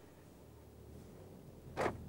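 Faint low rumble of an Opel Meriva pulling away, heard from inside the cabin, with one short noise near the end.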